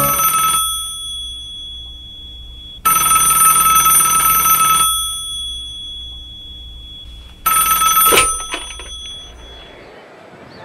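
A red rotary-dial telephone ringing in rings about two seconds long, each leaving a fading tone. The third ring is cut short near the end by a couple of clicks as the handset is lifted to answer.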